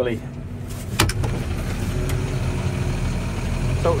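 A vehicle engine idling steadily with a low rumble, heard from inside the cab, with two sharp clicks about a second in.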